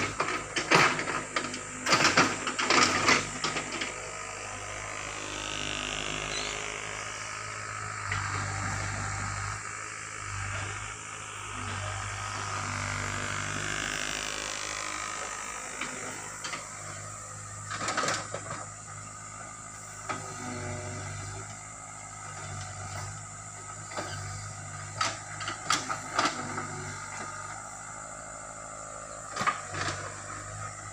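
Diesel engine of a hydraulic excavator running steadily, with scattered sharp knocks and clanks as it works soil, a cluster of them at the start and another midway.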